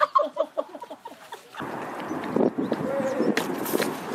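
A person laughing in quick repeated ha-ha notes that fade away over the first second and a half. Then a steady background hiss sets in with a short vocal sound in it.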